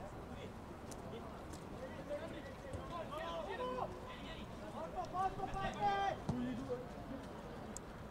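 Faint shouts of footballers calling on the pitch, a couple of brief calls about three seconds in and again around five to six seconds, over low open-air ambience of the ground.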